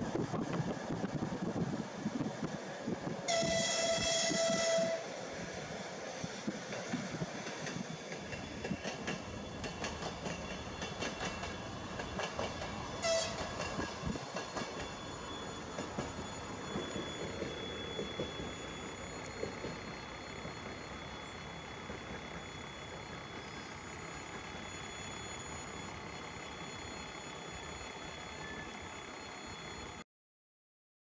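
Train wheels running on the rails, heard from aboard a moving train, the natural wheel noise. A train horn sounds for about a second and a half near the start, and gives a brief toot about 13 seconds in. The running noise grows quieter in the second half.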